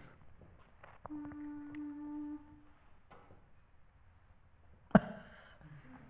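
A single steady note, hummed for just over a second: the starting pitch given before an a cappella vocal ensemble begins. About five seconds in comes one sharp knock, the loudest sound.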